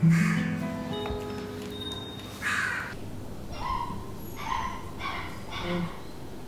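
A guitar note rings out at the start and fades over the first couple of seconds. A crow then caws about five times in short, harsh calls through the second half.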